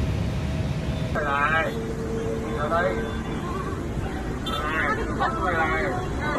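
Onlookers' voices exclaiming ("oh") in short bursts over a steady low rumble.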